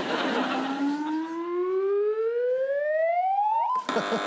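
A siren-like wailing tone that rises steadily in pitch for nearly four seconds, then cuts off abruptly.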